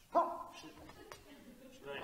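A person's short, bark-like cry: sudden and loud at first, fading over about half a second, with a fainter vocal sound near the end.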